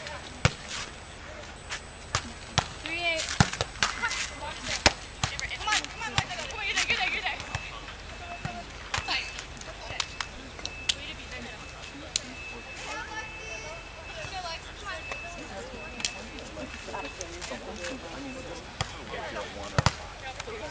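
Beach volleyball being played: a series of sharp, single slaps of hands and forearms on the ball, spaced a second or more apart, with faint voices between them.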